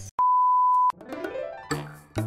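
A single steady electronic beep lasting under a second, followed by a rising sweep and the start of upbeat rhythmic music with a regular beat.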